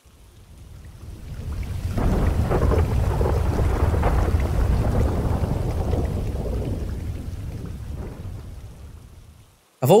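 Long rumble of thunder in a rainstorm, swelling over about two seconds, holding, then slowly fading away.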